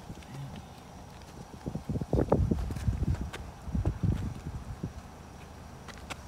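Rapid, irregular thuds and scuffs of feet moving on pavement as two people box, bunched in a burst from about two seconds in to about five seconds in.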